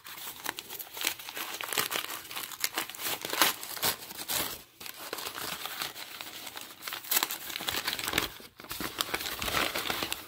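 Brown kraft packing paper crinkling and crumpling as it is unwrapped by hand, a dense run of paper crackles that pauses briefly twice.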